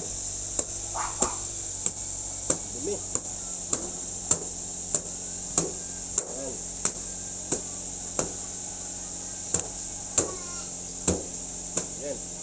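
A cleaning cloth being shaken out with sharp snaps in the air, about one snap every two-thirds of a second with a short break near the end, to knock loose cat hair. A steady low hum runs underneath.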